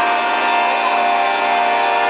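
Piano accordion holding one long, steady chord, played live.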